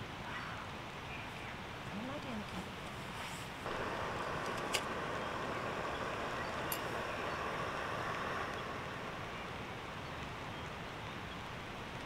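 Gas canister cooker (Firemaple Star X1) being lit: a steady gas hiss starts suddenly about four seconds in, with two sharp igniter clicks, then the burner runs and the hiss eases a little after about eight seconds as the flame is turned down to heat slowly.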